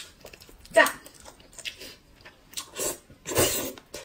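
Noodles being eaten: a few short mouth and slurping sounds, the loudest near the end as a clump of noodles in black bean sauce is drawn into the mouth.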